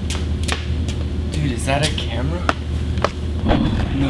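A steady low hum with several sharp knocks and handling noise from a handheld camera being jostled, and short bits of voices in between.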